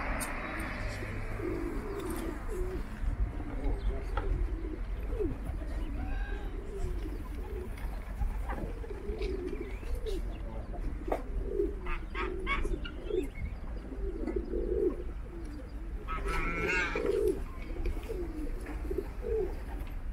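A flock of pigeons cooing, many short throaty coos overlapping and repeating. A higher, wavering bird call cuts in briefly about three-quarters of the way through.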